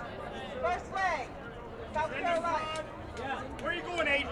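People talking over the chatter of a crowd, with no other distinct sound.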